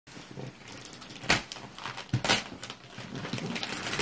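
Shiny wrapping paper on a gift box being torn and crinkled by hand, with soft rustling throughout and two louder rips about a second apart.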